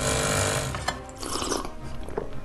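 Automatic espresso machine running as it pours coffee into a mug, a mechanical whir that is strongest in the first half second or so.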